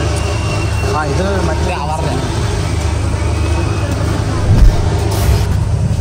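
Chatter of a crowd over a steady low rumble, with a single loud knock about four and a half seconds in.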